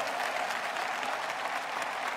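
Audience applauding, a steady even patter of many hands.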